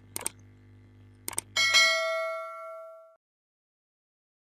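Two sets of short clicks, then a bright bell ding that rings out for about a second and a half: a subscribe-button click-and-bell sound effect.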